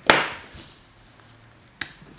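Washi tape and paper being handled on a planner page: a sharp scraping rustle just after the start that fades over about half a second, then a single short click near the end.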